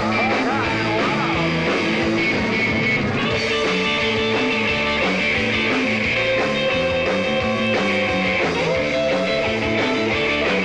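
Live rock and roll band playing an instrumental passage: an electric guitar carries the lead, with pitch bends near the start, over bass and drums, with no singing.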